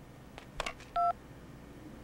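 Two clicks from a landline telephone being handled, then a single short key-press beep from the phone's keypad.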